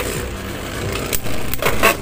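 Two Beyblade Burst tops spinning and grinding across a plastic Beyblade stadium, with a few sharp clicks of the tops striking each other in the second half.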